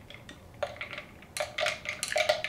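Ice and a metal straw clinking against a glass mason jar as the iced drink is stirred: a short clink about a third of the way in, then a quick run of clinks in the second half.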